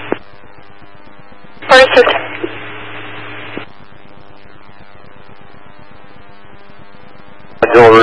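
Scanner radio between dispatch transmissions. A squelch click comes right at the start, then a short loud burst about two seconds in, followed by static hiss that cuts off abruptly after about two seconds. A low steady hum follows until a voice comes over the radio near the end.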